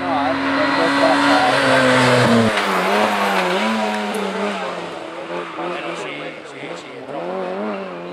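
Rally hatchback engine held at high revs as the car approaches, loudest with a rush of road noise. After an abrupt break, an engine revs up and down in quick waves as a car weaves through slalom cones.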